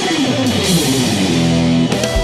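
Ibanez AZES electric guitar playing a fast run of notes that steps steadily downward, then settles on one held note about a second and a half in.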